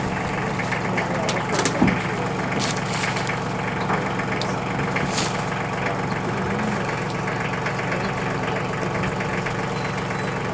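Pickup truck engine idling with a steady low hum, with a few short crackles of hay being handled in the first half.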